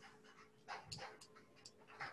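Near silence: faint room tone with a low steady hum and a few soft, faint noises around the middle.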